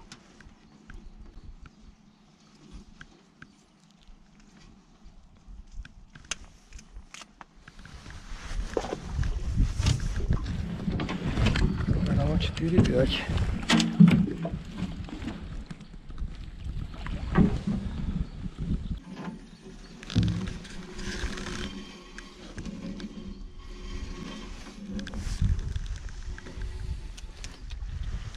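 A fishing net tangled with branches being hauled out of the river over the side of a metal boat: water splashing and dripping, with knocks and scrapes of net and wood against the hull. It is quiet with a few clicks at first and loudest from about eight to twenty seconds in.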